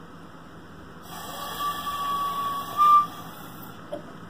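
A small toy flute blown by someone who can't really play it. About a second in, one breathy held note sounds for about two seconds, stepping up slightly in pitch just before it stops.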